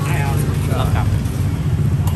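Steady low rumble of road traffic passing close by, with brief snatches of voices over it.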